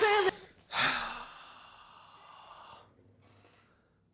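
A man's long, heavy sigh about a second in, fading out gradually, after the last moment of a held sung note is cut off abruptly.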